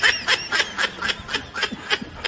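High-pitched snickering laughter: a quick run of short giggles, about five a second, that grows fainter over the two seconds.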